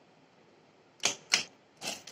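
Two sharp clicks from a Juki industrial sewing machine's mechanism about a second in, a third of a second apart, followed near the end by a short scraping noise as the fabric is set under the presser foot.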